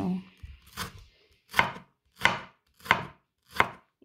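A broad stainless kitchen knife chopping a red onion on a wooden cutting board: five even chops, about one and a half a second, each a sharp knock of the blade through the onion onto the board.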